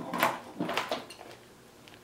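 A few light knocks and clatters in the first second as a plastic blister pack of files is picked up and handled.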